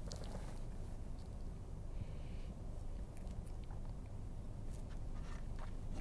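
Faint crinkling and clicking of a plastic blister pack on a cardboard card being handled and flexed by hand, over a low steady hum.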